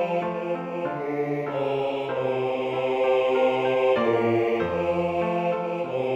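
A four-part choir sings with piano accompaniment in a bass-part learning track, the bass line strong in the mix. The choir moves through held notes that step in pitch.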